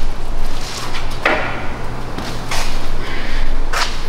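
Three short knocks, about one every second and a quarter, over a steady low hum.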